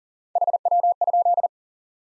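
Morse code at 40 words per minute: a single steady beep keyed in quick dits and dahs, three short groups that send the abbreviation HW? ("how copy?") and stop about a second and a half in.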